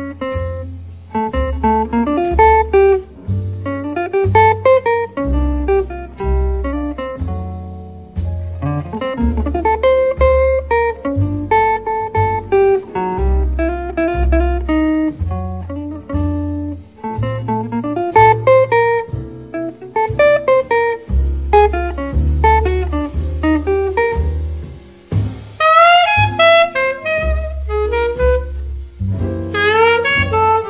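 Instrumental break of a 1950s jazz ballad: a jazz guitar solo of single plucked notes over a walking bass line, with a saxophone coming in over the last few seconds.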